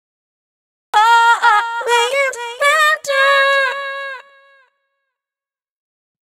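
VOCALOID5 preset vocal phrase played back: a synthesized high voice sings a short soulful run of several sliding notes in E-flat minor at 125 BPM. It starts about a second in, and the last note is held, then fades out.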